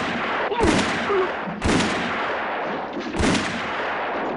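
Revolver gunshots on a film soundtrack: three loud shots, the second about a second after the first and the third about a second and a half later, each trailing off in a long echo.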